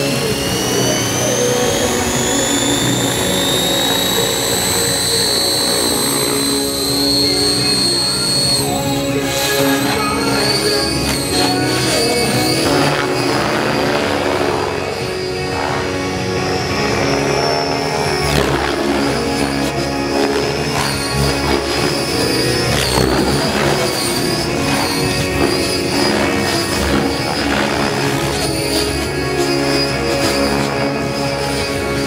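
Background music over an electric model helicopter, a Compass 7HV. Its motor whine rises in pitch as the rotor spools up over the first nine seconds or so, then holds high and wavers as the helicopter is flown hard.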